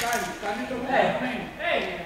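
Indistinct voices talking, echoing in a large sports hall, with a single sharp click right at the start.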